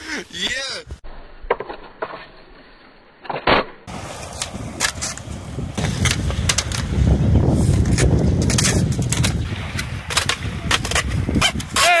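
Skateboard wheels rolling on concrete: a low rumble that builds and is loudest in the second half, with sharp clacks and knocks of the board scattered through it.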